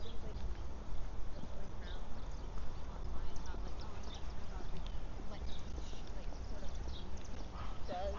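Street ambience: footsteps on a sidewalk as short faint ticks over a steady low rumble, with faint voices of passers-by, louder near the end.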